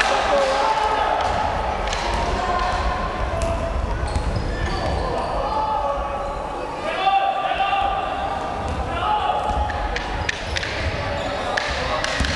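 A basketball bouncing on an indoor court during a game, with players' and spectators' voices echoing through the sports hall.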